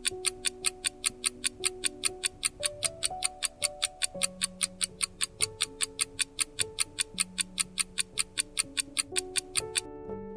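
Countdown timer sound effect: a clock ticking quickly and evenly, about four ticks a second, over soft background music of held, slowly changing chords. The ticking stops just before the end as the timer reaches zero.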